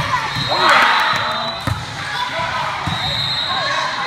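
Indoor volleyball hall ambience: many players and spectators calling out over one another, with a few dull ball thumps on the court floor, and a louder swell of voices about a second in.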